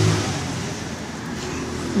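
Road traffic noise from a passing vehicle. It is loudest at the start, dies down within the first half second, and then holds as a steady noise.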